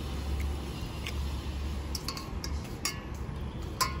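Stainless steel serving tongs clinking against a stainless steel bowl of raw fish pieces: several light metallic clinks, each with a short ring, the loudest near the end, over a steady low rumble.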